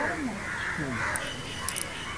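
Crows cawing in the background.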